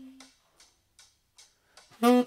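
A held tenor saxophone note ends about a quarter second in. Then there is a near-silent gap with only faint ticks from the pop drum-machine beat, about two and a half a second.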